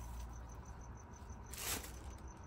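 Brief rustle of a tinsel gingerbread-man decoration being handled and set down, about a second and a half in, over faint room tone with a rapid, even series of high-pitched ticks.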